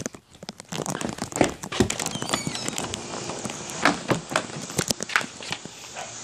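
Crinkling and rustling handling noise with many irregular clicks and knocks, from a handheld camera being carried through a doorway and outside. A few brief high squeaks come about two seconds in.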